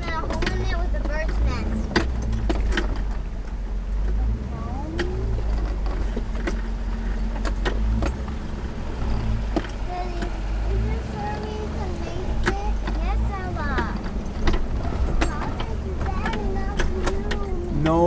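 Cabin sound of a 2003 Land Rover Discovery 2 crawling slowly over a rough dirt trail: the engine runs low and steady under frequent clicks and rattles of the cab and loose items jolting over the ruts.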